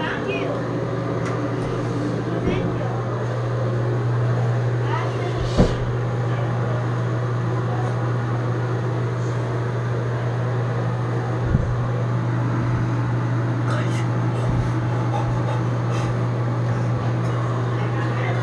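Steady low mechanical hum, with a sharp click about five and a half seconds in and a softer thump near the middle.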